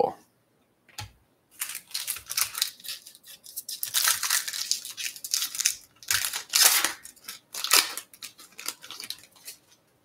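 Foil wrapper of a Topps Chrome baseball card pack being torn open and peeled back: a run of crackling, rustling tearing noise that starts after a single click about a second in and is loudest about four and seven seconds in.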